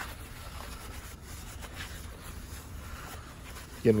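A cloth wiping and rubbing over the bottom of a steel propane tank, a faint, even scratchy rubbing as the surface is cleaned.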